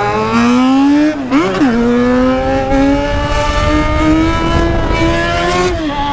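Yamaha XJ6 inline-four motorcycle engine pulling under throttle while riding. Its pitch climbs, dips and recovers about a second and a half in, then rises slowly again and falls just before the end as the revs change through the gears. A low rumble of wind on the helmet-mounted microphone runs underneath.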